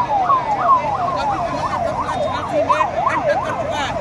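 Police vehicle siren sounding in quick repeated falling sweeps, about three a second. About halfway through it changes to a rapid rise-and-fall yelp.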